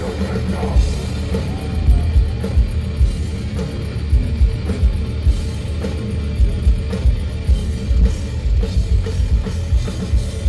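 A heavy metal band playing live: distorted electric guitars and bass over fast, hard-hit drums, with no pause.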